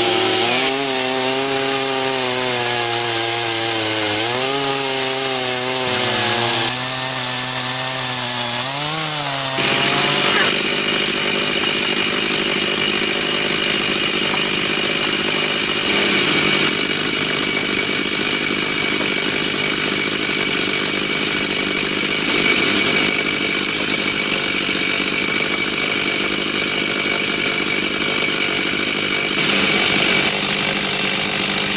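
Stihl gas chainsaw fitted with a micro mini chainsaw mill, ripping lengthwise through a cherry log. For the first ten seconds the engine note rises and dips under load; after that the cutting sound is steadier and noisier, with a few abrupt jumps in level.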